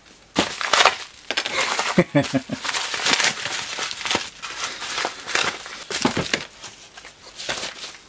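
An empty mailing bag being crumpled and scrunched up by hand, an irregular run of crinkles and crackles that keeps going almost to the end.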